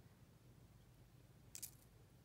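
Near silence: room tone, with one brief, faint, high-pitched tick or scrape about one and a half seconds in.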